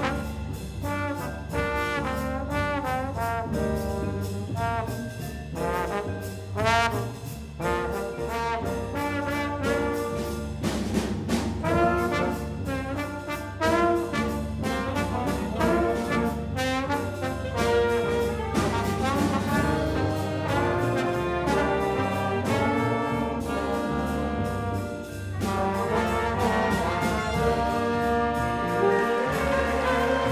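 Jazz trombone solo, a bending melodic line played over the band's accompaniment with steady upright bass notes underneath. Near the end the fuller band, saxophones included, comes in with held chords under it.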